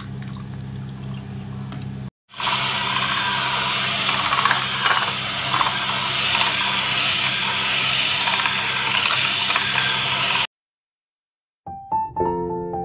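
Electric hand mixer running, its twin wire beaters whisking egg and oil into mayonnaise in a ceramic bowl: a steady motor hum at first, then, after a brief cut about two seconds in, a louder whirring that stops suddenly a couple of seconds before the end. Soft piano music comes in right at the end.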